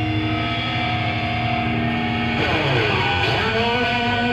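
Amplified electric guitars holding sustained, droning notes, with a group of notes sliding down in pitch and back up about halfway through.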